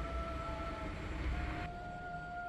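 Soft background music of long held notes that step to a new pitch every second or so, over a low rumble and hiss that cuts off sharply near the end.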